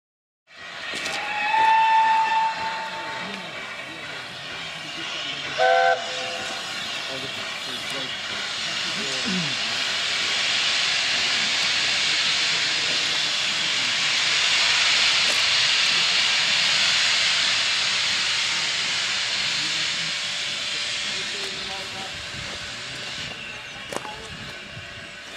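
Steam locomotive whistle giving a held note, then a short, loud chime-whistle blast a few seconds later, followed by a long hiss of escaping steam that swells for several seconds and then slowly eases off.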